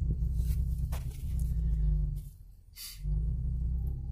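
Music playing inside a car, over a steady low rumble. The sound drops away briefly a little past halfway, then comes back.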